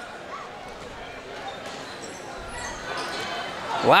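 Crowd chatter in a gymnasium, with a basketball bouncing on the hardwood court.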